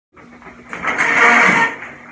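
Shower curtain rings scraping along the rod as the curtain is pulled open, a rough sliding rattle lasting about a second.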